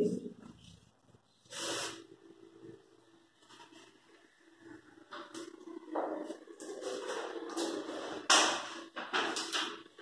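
Paper flashcards being handled and rustled: a short rustle about two seconds in, then a longer stretch of rustling and brushing from about halfway, with a sharper burst near the end.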